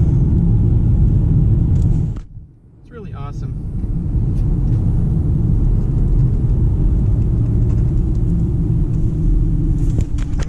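Steady low road and engine rumble inside the cabin of a 2018 Kia Optima LX, with its 2.4-litre four-cylinder, moving at around 50 km/h. The rumble drops out abruptly for under a second about two seconds in, then returns.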